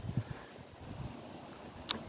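Faint outdoor background with a low wind rumble on the microphone, and a short click near the end.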